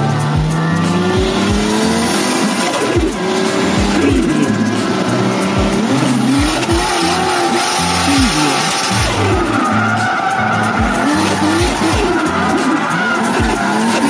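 Background music with a steady thumping beat, about two beats a second, under a sung melody.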